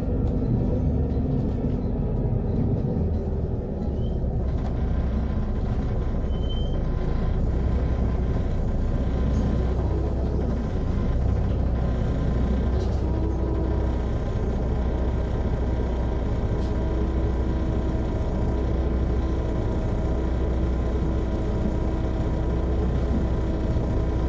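Volvo B7RLE city bus's six-cylinder diesel engine and ZF Ecomat automatic gearbox running while the bus drives, heard from inside the passenger cabin as a steady low drone with a few steady tones above it.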